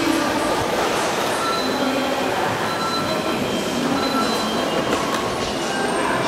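Steady echoing din of a busy underground pedestrian passage, with a few brief, thin, high-pitched squeals.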